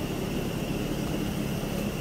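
Steady background room noise: a low rumble and hiss with a faint, thin, high-pitched whine running under it.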